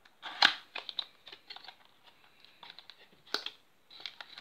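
Small cardboard figurine box being opened by hand: light clicks and scrapes of cardboard, with two sharper clicks, one about half a second in and one near the end.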